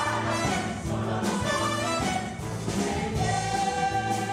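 A stage ensemble of many voices singing a musical-theatre number with instrumental backing, rising into a long held chord about three seconds in.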